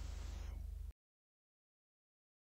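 Low steady electrical hum with a faint even buzz in the recording chain for about the first second, then the sound cuts off suddenly to dead digital silence.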